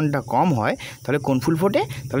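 A man's voice speaking, a lesson being read aloud, with no other sound standing out.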